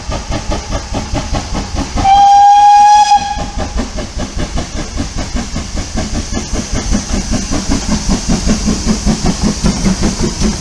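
Steam tank engine L150 working a train of coaches, its exhaust beating in a fast even rhythm that grows louder near the end as it draws close. About two seconds in it gives one steady whistle blast lasting over a second, the loudest sound.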